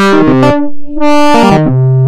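Ableton Operator synth patch playing a run of sustained notes, its filter sweeping shut and open again under a random LFO, with hard shaper drive. The result is kind of like freaking out.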